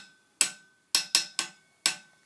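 Small metal triangle rulers clicking as they are handled: five sharp clicks, each with a brief metallic ring.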